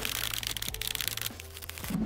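Masking tape being peeled off plastic court tiles, a dense crackle that fades after about a second, over background music with a steady low bass.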